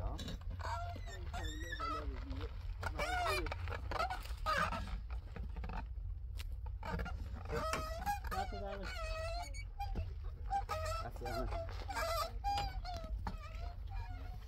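People's voices talking indistinctly, with pitch rising and falling, over a steady low rumble.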